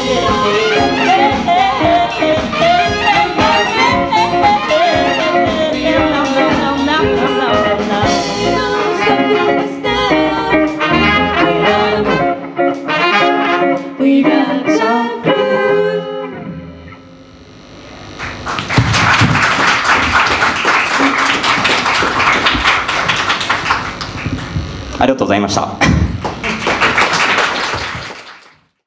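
Live band with keyboards, drums, bass, singers and a horn section of trumpets and saxophones playing the closing bars of a song, ending on a final hit at about 16 seconds that rings out. A couple of seconds later audience applause starts, with a brief lull near the end before it picks up again.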